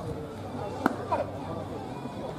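A single sharp crack of a baseball bat hitting a ball, just under a second in, over faint background voices.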